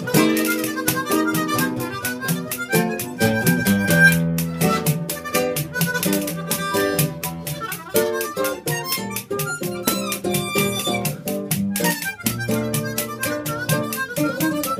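Two harmonicas playing a jazz tune together, with acoustic guitar and hand percussion accompanying.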